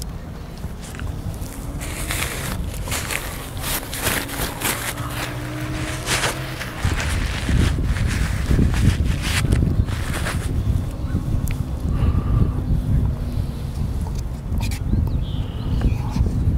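Paper napkin crinkling and rustling close to a clip-on microphone as it is wiped across the mouth, a quick run of crackles. About seven seconds in, a steady low rumble takes over and stays the loudest sound.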